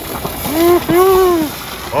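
Two drawn-out vocal exclamations from a person, each rising and then falling in pitch, over a steady rushing noise.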